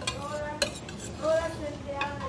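A metal spoon scraping and stirring in a skillet of thick tomato sauce, with one sharp clink of spoon on pan about halfway through and a couple of short pitched sounds, the loudest near the end.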